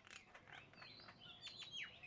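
Faint chirping of small birds: several short, high chirps and whistled notes, a few sliding down in pitch, coming thicker in the second second.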